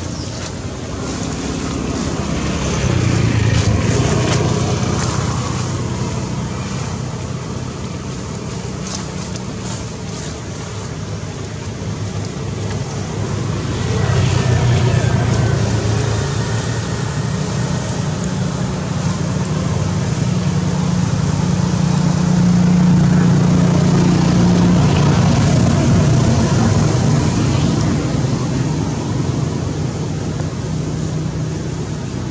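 Low engine hum that swells and fades three times.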